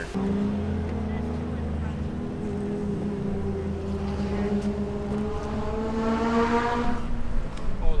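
A car engine running steadily, its pitch rising slowly through the middle and dropping back near the end.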